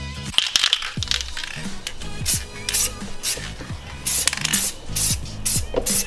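Aerosol spray paint can rattling and hissing in short repeated bursts, about two a second, over background music.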